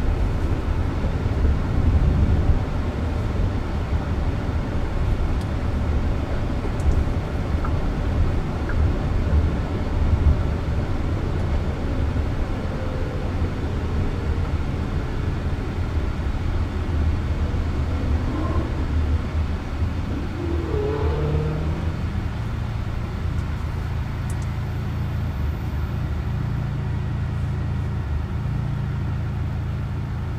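Road and tyre noise inside the cabin of a Jaguar I-Pace electric robotaxi on the move, a steady rumble with no engine note. A short whine glides up and down about two-thirds of the way through. After that the rumble turns steadier and a little quieter as the car slows in traffic toward a red light.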